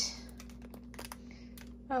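Hands handling the paper pages of a spiral-bound planner: a brief paper swish at the start, then a few faint fingertip and fingernail taps on the page. A steady low hum runs underneath.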